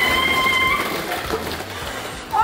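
A high, held shriek of surprise that breaks off about a second in, over the clatter of many small balls raining down and bouncing around the box, the clatter fading toward the end.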